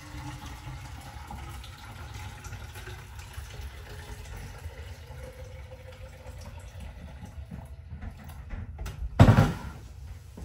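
Water poured from a jug into a drinking bottle, a steady trickle of filling. Near the end comes one loud, sharp knock.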